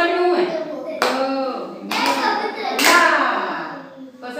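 Children's and a woman's voices chanting in a sing-song rhythm, with three sharp hand claps about a second apart keeping time.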